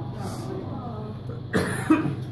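A person coughing once, a sudden harsh burst about one and a half seconds in, after a brief lull.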